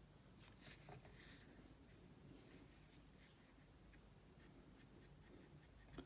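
Near silence with faint, scattered scratching and light ticks of a cotton bud rubbing against an iPod Nano's metal casing and ports, a couple about a second in and more near the end.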